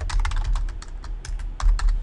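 Computer keyboard being typed on: a quick run of key clicks as a terminal command is entered.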